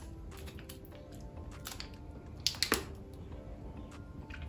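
Faint background music with quiet chewing of a bite of chunky milk chocolate. Two short sharp clicks come about two and a half seconds in.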